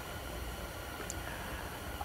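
Quiet steady background hiss of the room, with one faint small click about a second in.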